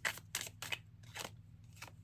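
Tarot cards being handled as one is drawn from the deck and laid down: about five short, crisp clicks and snaps of card stock.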